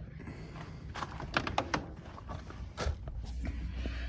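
Handling noises: a scattered run of light clicks and knocks, with a low steady hum coming in near the end.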